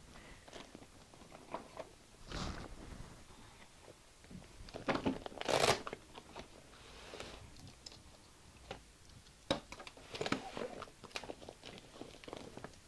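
Rummaging and handling: a tray of craft paper punches being pulled out, shifted and carried, with scattered clicks, knocks and rustles. The loudest clatter comes about five seconds in, with more short knocks near the end.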